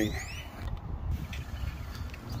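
Low, steady outdoor rumble, with the tail of a man's word at the very start.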